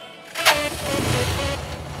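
Motorcycle engine starting about half a second in, then running with a steady rumble.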